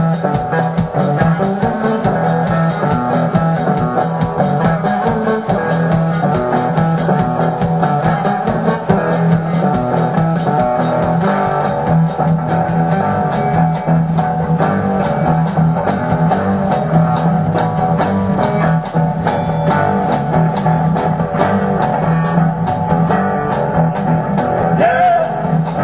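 Live blues-rock band playing an instrumental passage: electric guitar and bass over a drum kit, with evenly spaced cymbal strokes keeping a steady beat.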